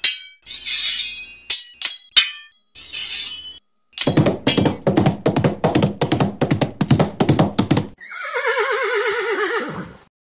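Sound effects: a few crashes and clanks, then fast horse hoofbeats at about five a second for about four seconds, then a horse whinnying with a wavering, falling pitch near the end.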